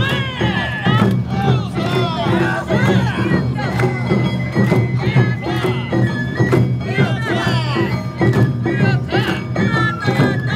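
Awa Odori festival music: gong and drums keep a steady beat under a high, held bamboo flute and plucked shamisen, with voices calling over it.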